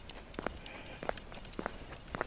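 Footsteps on a paved road, heard as faint, short clicks about every half second at walking pace.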